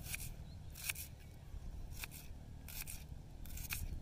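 Kitchen knife slicing through a red onion against a board: a crisp cut about once a second, some in quick pairs, over a steady low background rumble.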